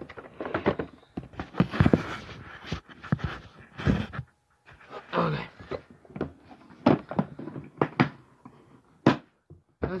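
Hard plastic tackle box and camera being handled and moved: an irregular run of knocks, clicks and rattles, with a few short vocal sounds in between.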